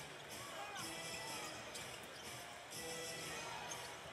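Faint live basketball game sound: a ball bouncing on a hardwood court, with low arena noise underneath.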